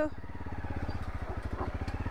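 Single-cylinder Honda CRF250L motorcycle engine idling with a steady, even beat.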